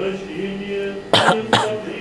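Two short coughs about half a second apart, over choral singing in the background.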